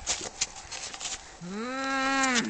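Two cats fighting: scuffling clicks and rustles, then about one and a half seconds in one cat starts a long, low yowl that rises at first and then holds steady.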